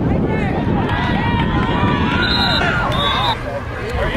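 Sideline spectators shouting and cheering during a football play: many overlapping raised voices over a steady low rumble. Two short, high, steady notes cut through, one a little past halfway and one near the end.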